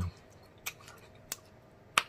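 Close-miked mouth sounds of someone chewing a bite of soft stewed rutabaga: a few sharp, wet lip-smacking clicks spaced about two-thirds of a second apart, otherwise quiet.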